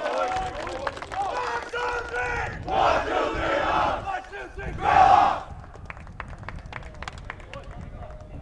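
A soccer team chanting together in a pregame huddle. Their voices rise to a group shout about three seconds in and a louder one about five seconds in, followed by a few sharp clicks.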